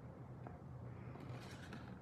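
Quiet room with a steady low hum and faint handling sounds as a craft circle punch and card stock are slid and repositioned, with one faint tick about half a second in.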